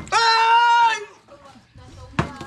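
A man's loud, drawn-out yell lasting about a second, high and held steady, just after a sharp knock at the very start.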